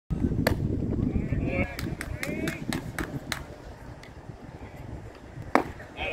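A pitched baseball popping into the catcher's mitt about half a second in, then shouting voices and a string of sharp clicks, and a single loud knock shortly before the end.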